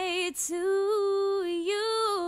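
A young woman's voice singing unaccompanied, holding long notes with vibrato and stepping gently up and down in pitch, with a quick breath near the start.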